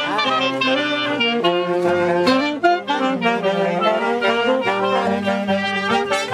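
Brass band led by saxophones playing a pasacalle tune over a steady drum beat, with a quick upward slide in the melody right at the start.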